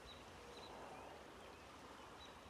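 Near silence: faint outdoor room tone with a few very faint, short high chirps.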